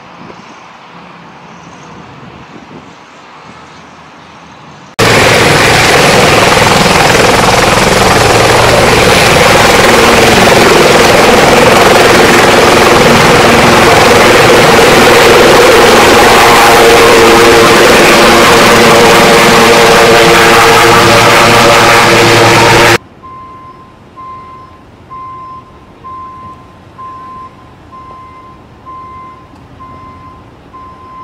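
Sikorsky S-76 air ambulance helicopter's turbines and rotor, very loud and steady, as it lifts off; the sound starts suddenly about five seconds in and cuts off near the two-thirds mark. After it, a short high beep repeats about once a second.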